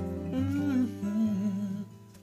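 A closing acoustic guitar chord ringing while a man hums a short, wavering final phrase over it. Both die away near the end.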